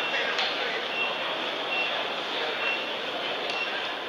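A short, high electronic beep repeating a little under once a second, five times, over steady crowd noise in a large hall, with a couple of sharp clicks.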